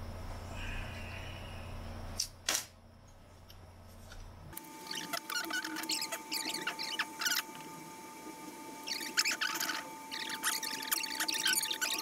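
Low steady hum with two knocks, then after an abrupt change a faint steady tone with short spells of crackling, squeaky sizzle: solder and flux crackling under a desoldering iron held to the motor's terminal pins.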